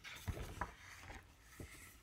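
Faint paper rustle of a hardcover picture book's page being turned, with a few soft knocks as the book is handled.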